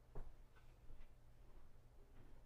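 Near silence: quiet room tone with a steady low hum and one soft knock just after the start.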